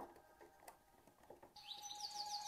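Near silence, with a faint knock at the start. About one and a half seconds in, quick bird chirps fade in over a steady held tone, growing louder toward the end.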